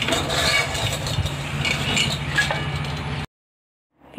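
A steady low mechanical hum, like a motor running, with scattered light clinks and clicks over it, cut off abruptly into silence near the end.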